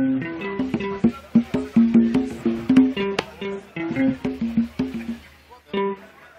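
Electric guitar picking a loose run of single notes over the band's PA, several notes a second, stopping just before the end with one last note.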